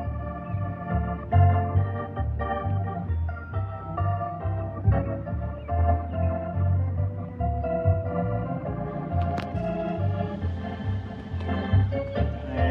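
Organ music playing sustained chords over a bass line with a steady beat.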